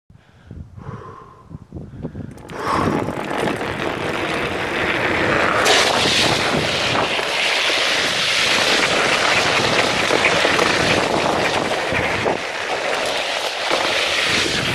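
Drift trikes rolling downhill on asphalt: a loud, steady rush of wind on the camera microphone mixed with wheel noise on the road. It starts about two and a half seconds in, after a quieter opening, and grows a little louder a few seconds later.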